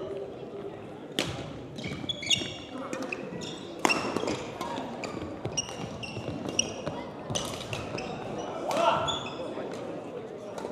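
Badminton rally: sharp cracks of rackets striking the shuttlecock, with shoes squeaking on the gym court floor in short high chirps between the hits.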